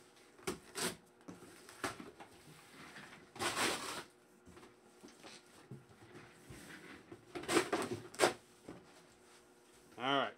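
Cardboard handling: a sealed cardboard case box being slid and pulled out of its cardboard shipping box, with a few short scrapes and knocks, one longer scraping rub about three and a half seconds in, and two sharper scrapes near the eighth second.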